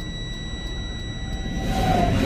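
Low steady rumble of a semi truck's Detroit DD15 diesel and road noise heard inside the cab as the truck crawls along at walking pace, derated with an engine shutdown in progress. A continuous high-pitched tone runs through it.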